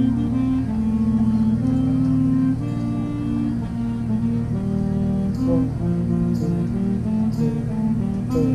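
Marching band playing a slow melody in long held notes that step from pitch to pitch, with no drumming. Faint crisp strikes come about once a second in the second half.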